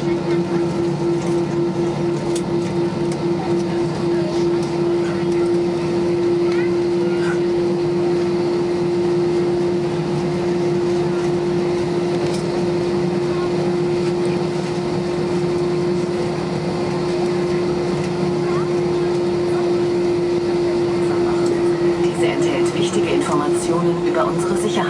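Airbus A320-214 cabin while taxiing, its CFM56 engines at idle: a steady drone with one strong constant tone over a lower hum and a broad hiss.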